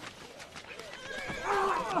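A horse whinnying. It starts a little over a second in and grows loud toward the end.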